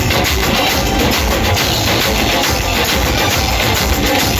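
Several dhols beaten with sticks together with a live band, loud music with a steady drum beat.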